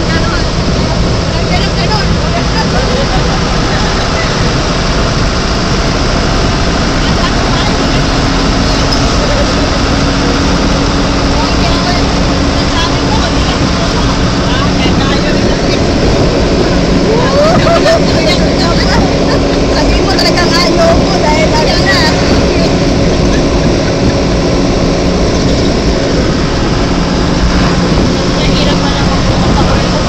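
Engine and road noise inside a moving passenger vehicle's cabin: a steady, loud drone whose low engine note shifts now and then as the vehicle changes speed, with people talking over it.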